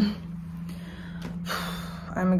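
A woman breathing out heavily, a tired sigh, the breath swelling near the end, over a steady low hum.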